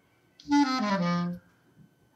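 Clarinet blown briefly: one short note, about a second long, that starts about half a second in and slides down in pitch.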